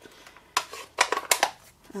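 A quick run of sharp clicks and taps from a plastic stamp ink pad case being handled and closed, starting about half a second in.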